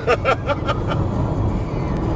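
Steady low road and engine rumble inside a car cruising at highway speed. A laugh trails off in the first half second.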